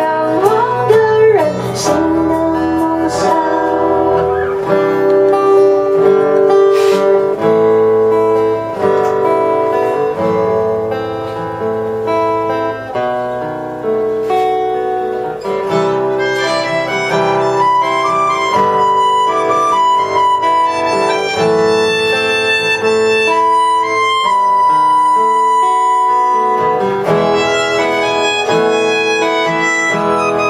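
Live indie band playing a song, with electric bass under a long-held melody line.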